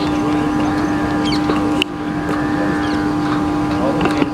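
A steady, even drone like a motor running, holding one low pitch throughout, over a noisy outdoor background with scattered short sounds.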